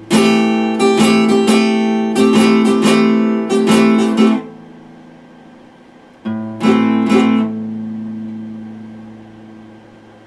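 Epiphone steel-string acoustic guitar strummed in a quick run of strokes for about four seconds, then left ringing. A second short burst of strums comes a little past the middle, and the chord rings out and fades.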